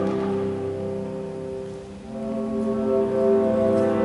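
Live symphony orchestra playing held chords; the sound dies down about halfway through, then a new sustained chord swells in and holds.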